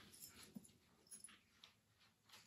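Near silence: room tone with a few faint, short soft sounds.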